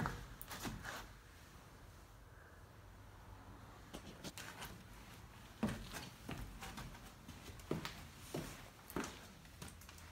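Faint, irregular scuffs and knocks of someone moving about a basement while carrying the recording phone, with a quiet room hum beneath.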